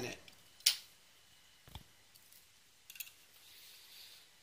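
A single sharp click about two-thirds of a second in, then a few faint ticks over quiet room noise.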